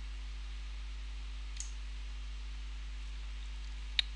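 Steady low electrical hum and faint hiss from the recording setup, with a soft computer-mouse click about a second and a half in and a sharper click at the very end.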